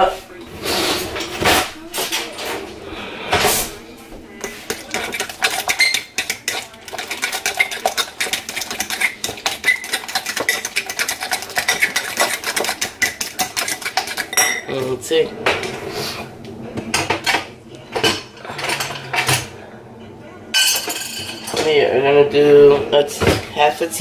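Metal spoon beating mashed banana and egg in a glass mixing bowl: rapid, steady clinks and scrapes of metal against glass, pausing briefly a little past halfway.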